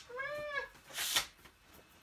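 A house cat meowing once, a single call that rises and falls in pitch, followed about a second in by a short rustling burst.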